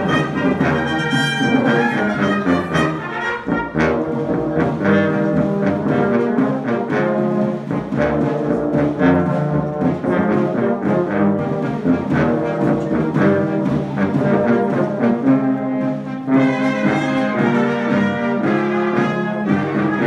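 Brass band of tubas, baritone horns and trumpets playing a piece together in harmony, a continuous run of sustained notes. There are short breaks between phrases about four seconds in and again about four-fifths of the way through, where a brighter phrase begins.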